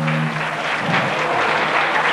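Audience applauding at the end of a song. The band's final held note stops just after the start.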